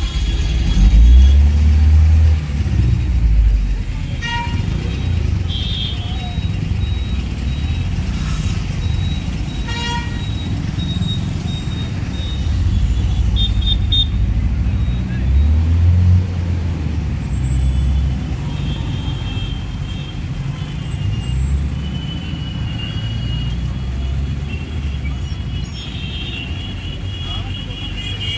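Road traffic at night, with trucks and other motor vehicles passing in a low, steady rumble that swells loudest about a second in and again around the middle. Short vehicle horn toots sound several times.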